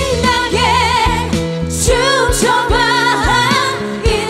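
Women's voices singing together live into microphones over an amplified pop backing track with a steady drum beat.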